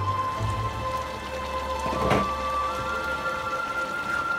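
Soft background music over the crackling sizzle of mixed vegetables cooking in a hot wok, with a single knock about halfway through.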